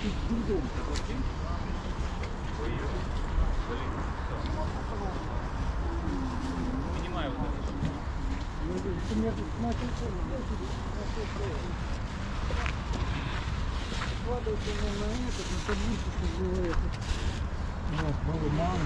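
Outdoor market ambience: faint voices of people talking at a distance over a steady low rumble, with a few light clicks scattered through.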